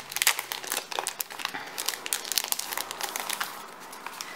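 Clear plastic packet crinkling as it is opened and its card contents pulled out: a rapid run of crackles, busiest in the first two seconds and thinning out toward the end.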